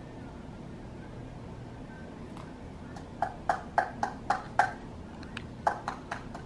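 A plastic utensil tapping against a small plastic cup to knock its contents into a bowl. It starts about three seconds in as a quick run of light taps, about four a second, with two more taps near the end.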